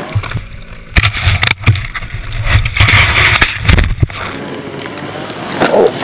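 Avalanche snow rushing over and burying the camera: a heavy low rumble with several sharp knocks between about one and four seconds in as the camera is tumbled, easing to a quieter rush afterwards.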